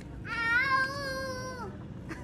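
One long meow, held steady in pitch for over a second and then falling off at the end.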